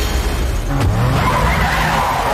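Movie sound effects: a crash of breaking car glass at the start, then car tyres skidding and squealing from about a second in, over a steady low rumble.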